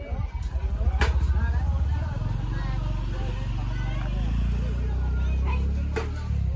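A motor vehicle engine running at low revs with a deep, pulsing rumble, getting a little louder about four seconds in. Faint voices behind it.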